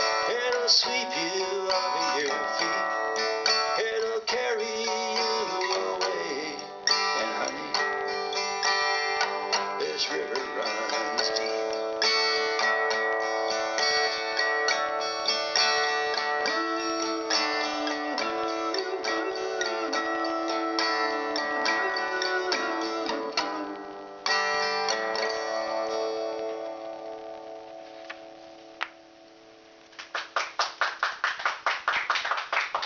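Acoustic guitar strummed through the song's instrumental ending, with the final chord ringing out and fading away over the last few seconds.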